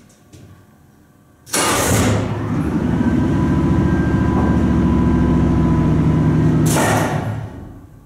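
Vintage Otis freight traction elevator's hoist motor starting with a sudden burst of noise, running with a steady low hum for about five seconds, then cutting out with another burst and winding down.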